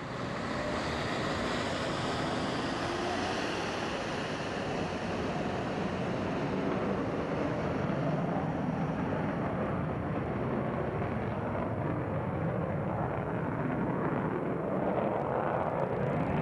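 Saab JA-37 Viggen's afterburning Volvo RM8B turbofan at full power through a short take-off and steep climb-out: a steady, loud jet rush whose hiss fades from about halfway as the aircraft climbs away.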